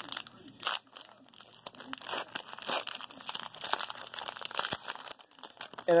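Foil trading-card pack wrapper crinkling and tearing as it is torn open by hand, in irregular rustles and rips.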